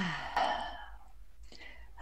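A woman's sigh: a short falling voiced note that trails into a breathy exhalation, then a fainter breath about a second and a half in.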